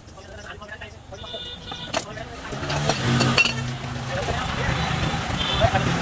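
A sharp click about two seconds in, then a steady engine hum that grows louder and holds.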